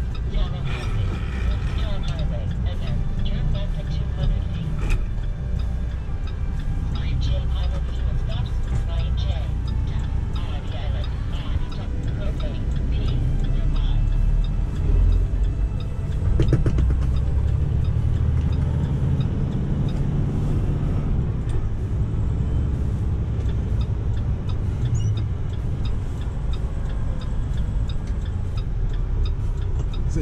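Semi-truck engine and road noise heard inside the cab as the truck rolls along an exit ramp: a steady low rumble throughout.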